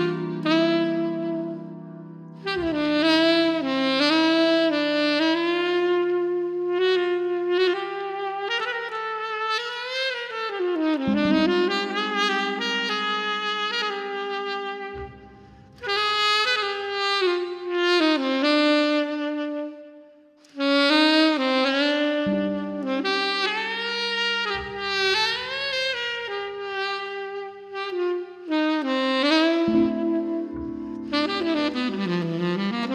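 Tenor saxophone playing a slow, gliding solo melody over held low backing notes that change about every ten seconds. The sax pauses briefly twice in the middle.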